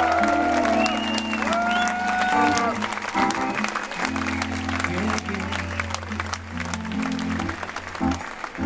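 Live band vamping on sustained bass and keyboard chords under audience applause; a few long lead notes bend up and down over it in the first few seconds, and the chord changes about four seconds in.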